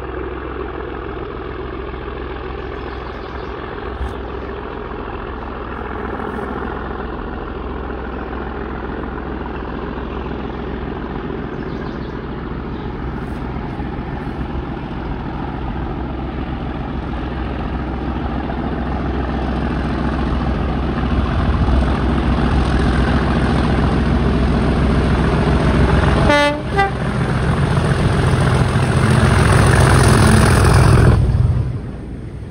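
A Class 37 diesel locomotive's English Electric V12 engine running under power, getting steadily louder as the train approaches and comes up to pass beneath.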